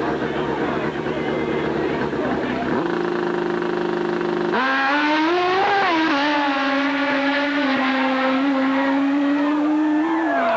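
A drag-racing motorcycle's engine running rough on the start line, then held at a steady rev, before it launches at full throttle about four and a half seconds in. It then holds a loud, high, steady note as the bike runs down the strip.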